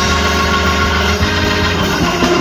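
Organ music played on an electronic keyboard, held chords over a low bass note.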